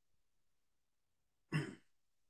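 A person clears their throat once, briefly, about one and a half seconds in.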